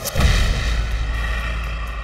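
Trailer sound-design impact: a sudden deep boom about a quarter second in that carries on as a low rumble, with a high ringing layer over its first second.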